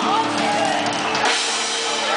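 Live band playing amplified music on stage, with drums and sustained keyboard chords.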